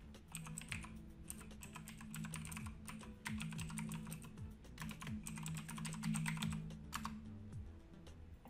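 Typing on a computer keyboard: keys clicking in quick runs with short pauses in between.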